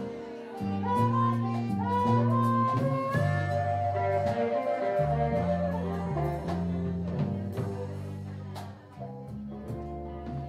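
Live band with a harmonica taking the lead, cupped against a vocal microphone, playing long held notes that step and bend in pitch over electric guitar, electric bass and a drum kit. The harmonica line fades out near the end.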